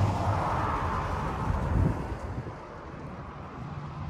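Outdoor background rumble, like a distant vehicle going by, louder for the first two seconds and then fading.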